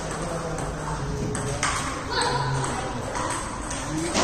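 Table tennis ball striking bats and the table in short, sharp clicks, over background chatter.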